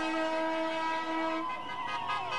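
Vehicle horn held in a steady chord of several notes; the lowest note drops out about a second and a half in.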